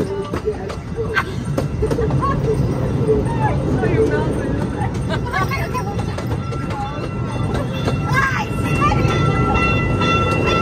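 Small amusement train running along its track, heard from a passenger car as a steady low rumble, with the voices of people nearby. A steady high tone joins about two-thirds of the way through.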